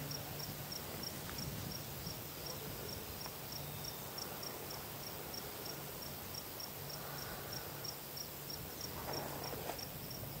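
An insect chirping: short, high, evenly spaced chirps, about three a second, over faint outdoor background noise.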